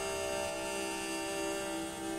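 Violin bowed in a long, steady held note, rich in overtones.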